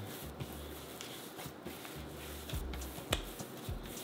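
Hands kneading a soft, buttery wheat-flour dough on a granite countertop: faint pressing and rubbing, with a few light knocks, the sharpest about three seconds in.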